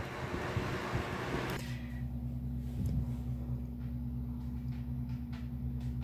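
Steady low hum of a room appliance such as a fan or air conditioner, with a few faint clicks. For the first second and a half a broader hiss lies over it, then cuts off suddenly.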